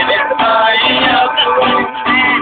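A melody blown on a homemade horn made from a curved tube, a buzzy, brass-like tone moving through held notes, over a strummed acoustic guitar.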